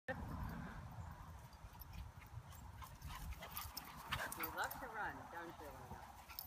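Dogs at play, with a run of whiny vocal sounds that rise and fall in pitch for about a second and a half, starting around four seconds in. Under them is a low rumble of wind on the microphone.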